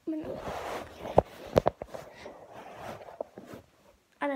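Handling noise from a phone camera being moved and repositioned: rustling and rubbing right against the microphone, with a few sharp knocks in the middle.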